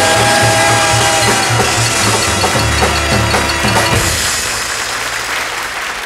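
Two singers hold the last note of a live bebop number over the jazz band until about a second in. The band plays on to a final hit about four seconds in, then audience applause takes over and fades out.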